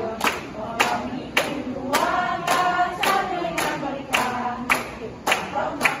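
A group of women singing a song together while clapping hands on a steady beat, about two claps a second.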